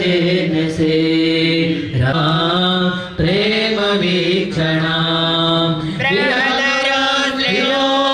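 A male priest chanting Sanskrit puja mantras into a microphone, amplified over loudspeakers. The chant is sung in long held phrases on a few notes, with short breaks for breath.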